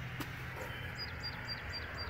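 A small bird chirping: short high chirps, about four a second, starting about a second in, over a steady low hum.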